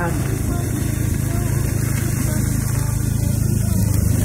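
Small motorbike engine running steadily while riding along, a constant low drone with wind hiss over the microphone.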